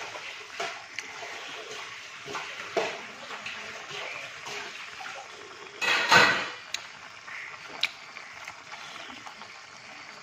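Pork curry simmering in an aluminium pan while a metal spoon stirs it, with the spoon scraping and knocking against the pan now and then over a steady wet sizzle. The loudest scrape comes about six seconds in.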